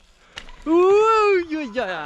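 A man's long, drawn-out 'ouh!' called out at a mountain-bike jump, its pitch rising and then falling, with a brief click just before it.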